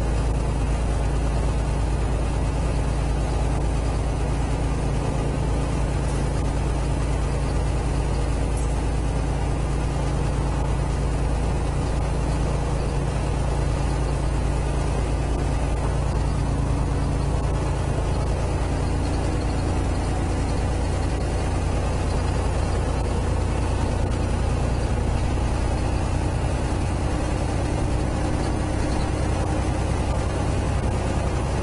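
Semi-truck's diesel engine and road noise heard from inside the cab while cruising: a steady low drone, with the engine note shifting slightly now and then.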